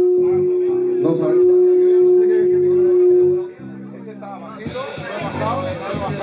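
Live band music with one long, steady held note over lower sustained notes, which cuts off about three and a half seconds in. After a short lull, voices and room noise rise near the end.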